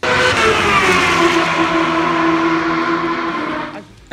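Honda CBR1000RR-R Fireblade's inline-four engine at high revs as the bike goes past at speed. The note slowly falls in pitch as it draws away and fades out shortly before the end.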